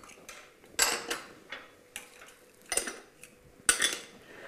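A handful of sharp clinks and knocks of kitchen utensils and bowls being handled on a counter, spaced irregularly, the loudest one near the end.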